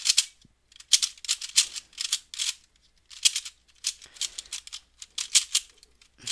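Dayan Lingyun v2 3x3 speedcube being turned quickly through an algorithm (an R-perm), the layers clicking and clacking in several quick runs with short pauses between. The plastic cube is unlubricated and untensioned, with rough, stiff turning.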